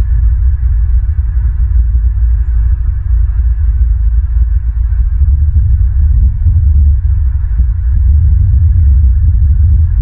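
Wind buffeting an outdoor nest-camera microphone: a loud, uneven low rumble.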